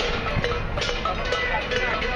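Metallic percussion beating a steady rhythm, a sharp knock just over twice a second, with voices behind it.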